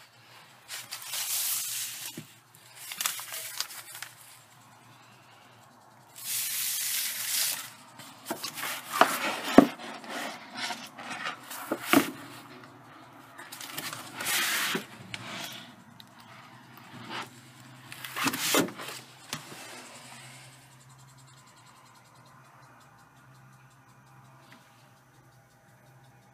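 Paper pages being handled and turned, rustling in about seven short bursts, with a couple of sharp clicks about halfway through.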